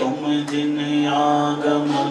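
Devotional chanting sung on long, steadily held notes, the pitch shifting near the end.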